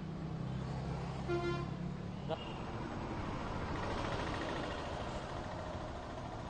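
Urban road traffic: two-wheeler engines run past with a steady hum for the first two seconds, and a vehicle horn gives one short toot about a second and a half in. A wash of passing-traffic noise follows.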